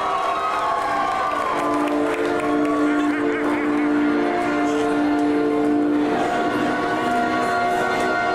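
Live concert sound: held keyboard or synth chords through the PA, changing about six seconds in, over a crowd cheering and shouting.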